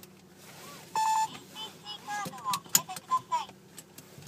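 Pioneer Cybernavi car navigation unit powering up: one loud steady beep about a second in, followed by a run of short gliding tones and clicks as the unit boots.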